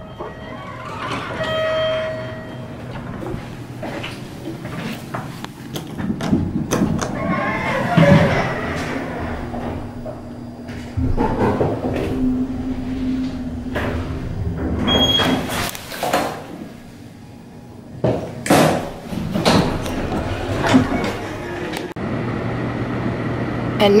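Hotel passenger elevator in use: its doors slide open and shut and the car runs, with a steady hum for a few seconds midway. Short tones sound near the start and about halfway through, and there are scattered knocks and background voices.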